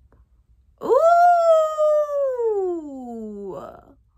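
A woman's voice holding one long wordless note. It starts about a second in, jumps up high, then slides slowly down in pitch for nearly three seconds and ends in a short breath.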